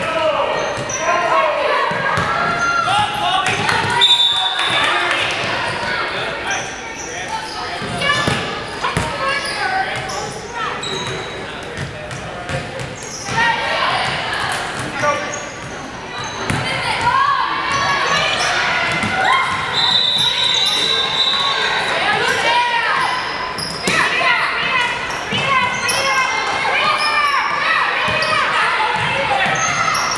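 A basketball bouncing on a hardwood gym floor during play, with many voices of players and onlookers echoing in the large hall. A few high-pitched held tones cut through, the longest about two-thirds of the way in.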